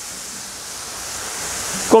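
A steady hiss, strongest in the high range, getting slightly louder toward the end.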